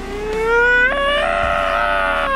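A man's long, drawn-out wail of exaggerated crying, one unbroken cry that rises in pitch and grows louder about half a second in.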